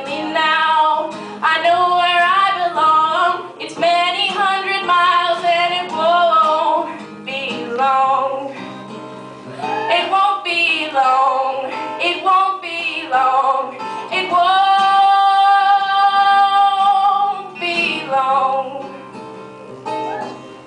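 A woman singing over a plucked acoustic guitar. Near the end she holds one long note for about three seconds.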